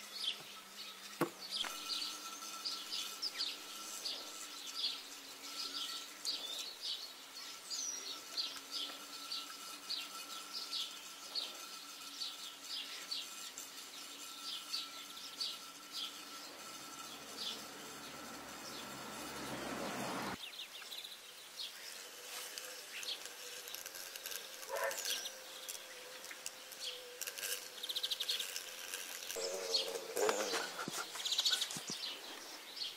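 Small birds chirping repeatedly, a few short high chirps a second for much of the time, over a faint steady hum. About twenty seconds in, a rising rush cuts off suddenly.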